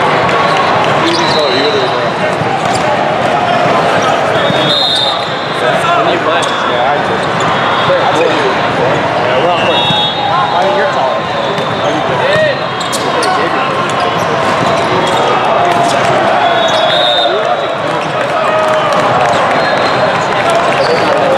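Hubbub of a large hall during volleyball play: many overlapping voices, volleyballs bouncing and being hit, and brief high squeaks of sneakers on the court now and then.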